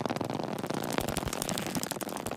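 A cat's claws scraping down a sisal-rope scratching post as it slides to the ground: a dense, fast run of scratchy clicks.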